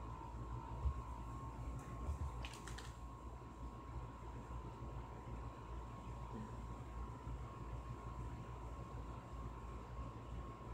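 Quiet room tone with a steady electrical hum. A single thump comes about a second in, and a short cluster of light clicks follows between two and three seconds.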